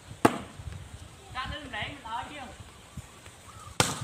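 A volleyball struck twice by hand, two sharp slaps about three and a half seconds apart, the first the louder. Players' voices call out between the hits.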